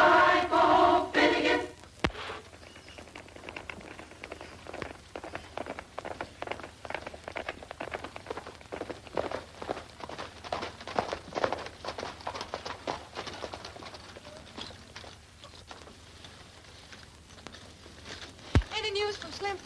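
Boys singing together, cut off within the first two seconds. Then a galloping horse's hoofbeats, a quick uneven run of thuds that is loudest in the middle and fades near the end.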